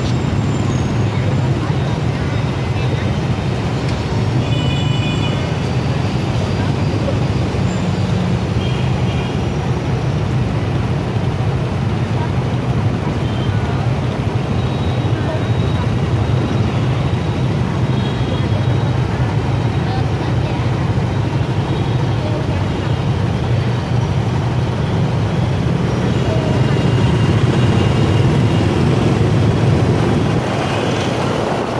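Motorbike and scooter engines in dense city traffic running with a steady low hum while the traffic waits at a light. The sound grows louder in the last few seconds as the traffic pulls away.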